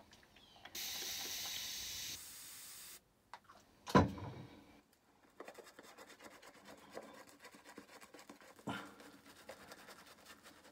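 Shaving brush scrubbing lather onto a stubbled face, a continuous fine scratching of bristles from about halfway through. Near the start, about two seconds of steady hiss like a tap running water onto the brush to thin the lather, and one sharp knock about four seconds in.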